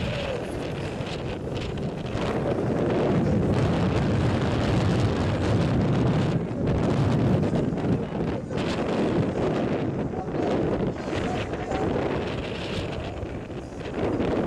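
Wind buffeting the microphone: an uneven low rumble that swells and falls.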